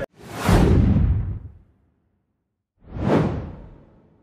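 Two whoosh sound effects from an animated end-card graphic. The first swells up just after the start and fades over about a second and a half. After a gap of silence, a second, shorter whoosh comes near the end.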